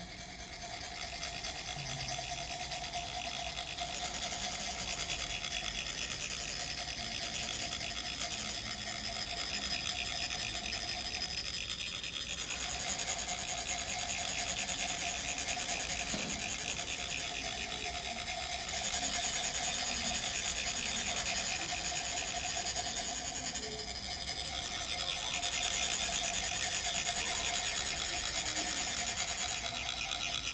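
Tibetan chak-pur, the ridged metal sand funnels, being rasped with metal rods in a continuous fast, metallic grating. The vibration is what makes the coloured sand trickle out onto the mandala. The rasping swells and eases but never stops.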